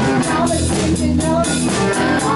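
Live band playing a song: drum kit with cymbals heard up close, electric bass, and a woman singing into a microphone.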